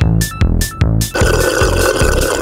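Upbeat electronic background music with a steady beat. About a second in, a sustained noisy sound effect with a steady high tone over it joins the music.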